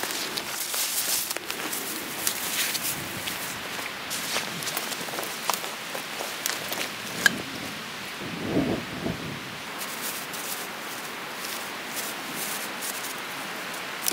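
Dry bracken fronds and twigs rustling and crackling as someone brushes and crawls through a fern-thatched shelter, with many small irregular snaps over a steady hiss.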